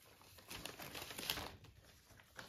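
Thin plastic packaging crinkling and rustling faintly, with a few light crackles, loudest through the middle second.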